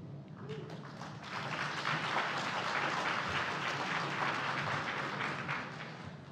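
Audience applauding, building up about a second in and fading away near the end.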